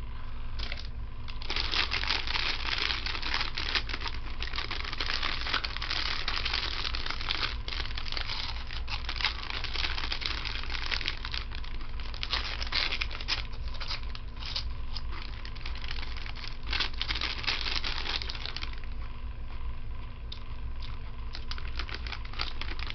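Plastic snack bag of pork rinds crinkling as it is handled and tipped to the mouth. It starts about a second and a half in, runs thick and crackly, and thins out near the end.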